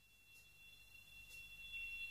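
Near silence in the gap between songs: a faint steady high whine and a low hum, slowly getting louder.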